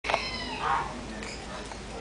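Birds calling: two short pitched cries in the first second, the first high and slightly falling, then fainter background sound.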